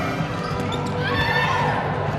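Netball court sounds on a wooden indoor floor: the ball thudding on the boards and shoes squeaking as players move, over the steady noise of the hall.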